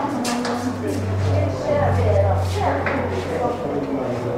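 Other people talking in the background, with a low steady hum that comes in about half a second in, dips briefly and fades out near three seconds.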